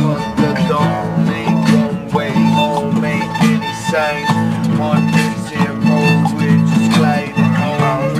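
Two acoustic guitars playing a steady strummed rhythm, with a violin melody above them.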